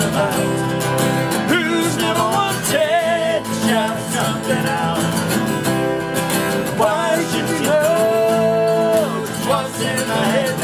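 Acoustic guitars strumming an original folk-style song while a man sings, holding long notes twice.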